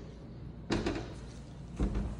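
Kitchen sink-base cabinet doors swung shut, with two knocks about a second apart as they close against the frame.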